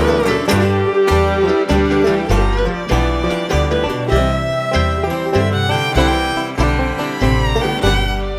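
Bluegrass band playing an instrumental break with no singing: fiddle, five-string banjo, acoustic guitar, mandolin and upright bass, the bass sounding a note about twice a second.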